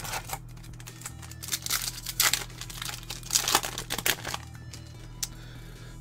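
Foil booster-pack wrapper crinkling and tearing as a Yu-Gi-Oh Millennium Pack is taken from its box and ripped open, in several irregular bursts of crackle.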